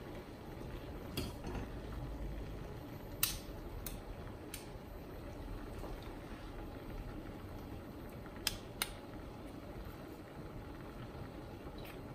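Steady low hiss of a gas burner and a simmering pot, with about six light clinks of a steel spoon against a steel pot as cooked jackfruit pieces are scooped out; the loudest clink comes about 3 s in.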